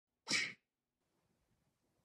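A single short, sharp breath-like burst from a person, about a third of a second in and lasting about a quarter of a second.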